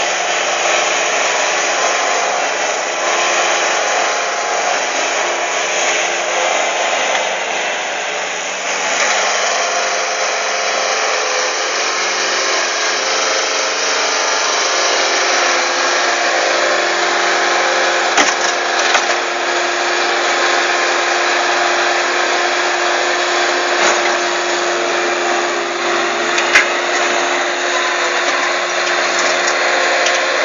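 Bobcat S130 skid-steer loader's diesel engine running steadily at high revs as the machine manoeuvres, with a few sharp knocks in the second half.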